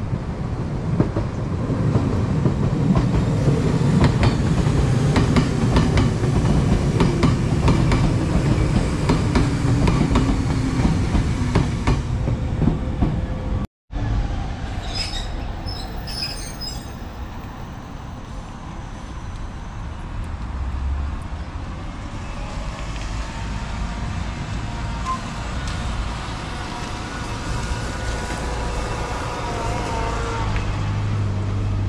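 Kobe Electric Railway train running on the track, its wheels clicking over rail joints with a low rumble for the first dozen seconds. After a sudden break the train sound is quieter, with brief high squeals and a rising whine near the end.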